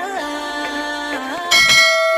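Intro jingle of held notes that step in pitch, then about one and a half seconds in a bright bell chime rings out loudly: the notification-bell sound effect of a subscribe-button animation.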